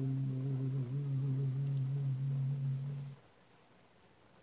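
A cappella voices holding a final low, steady note, cutting off about three seconds in and leaving faint room noise.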